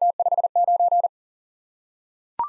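Morse code tone at a single steady pitch, sending the digits 479 at 40 words per minute in three quick groups of dits and dahs that stop about a second in.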